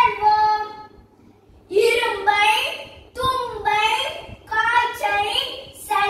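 A young girl singing solo and unaccompanied, in phrases with long held notes. She breaks off for under a second about a second in, then carries on.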